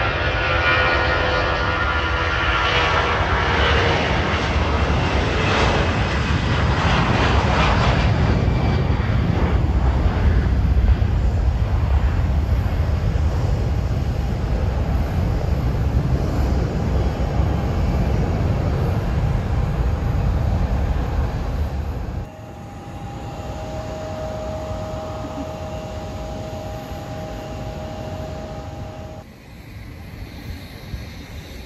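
Airbus A340-300 on its takeoff roll and climb-out, its four jet engines at takeoff thrust giving a loud, steady roar with a deep rumble. About 22 seconds in the sound cuts to a quieter steady hum with a faint whine.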